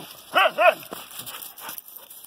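A dog gives two short play vocalizations in quick succession about half a second in, each rising then falling in pitch, as it roughhouses with other dogs.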